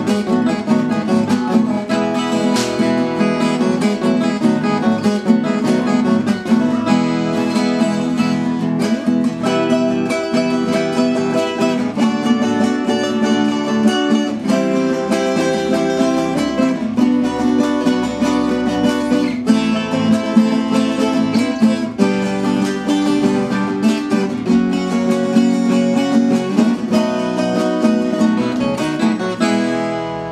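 Two violas caipiras played together, strummed and plucked in a steady rhythmic tune, fading out near the end.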